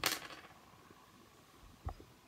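A sharp clink at the start with a faint ringing tail, then a short, dull thump near the end: small objects being handled.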